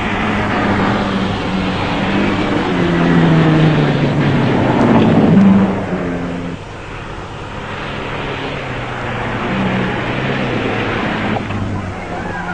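Rally car engines running hard on a gravel stage. One engine rises in pitch for a few seconds and cuts off suddenly about six and a half seconds in, and another engine runs on more steadily after it.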